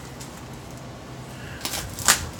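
Mostly quiet room tone with a low hum, then a short crinkling rustle of plastic wrap being cut with a knife near the end.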